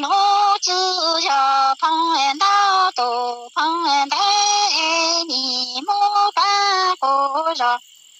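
A woman singing Hmong sung verse unaccompanied, in held, level notes that jump from pitch to pitch with short breaks between phrases; the voice stops just before the end.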